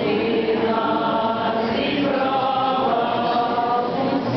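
Many voices singing a church hymn together in long, held notes.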